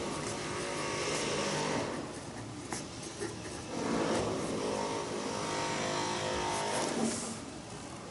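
A motor vehicle passing by, its engine sound swelling twice, over the scratch of a felt-tip pen writing on workbook paper.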